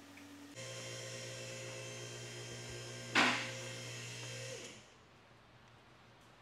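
A machine motor hum starts abruptly, runs steadily for about four seconds and winds down with a slight drop in pitch. A short, loud burst of noise about three seconds in is the loudest sound.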